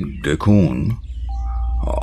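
A person's voice making short sounds in the first second, over a steady low drone of background score. A single held tone comes in a little past halfway.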